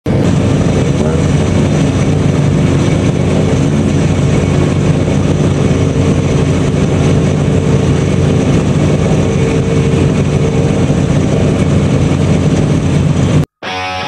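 Rally car engine running steadily, without revving, until it cuts off suddenly near the end.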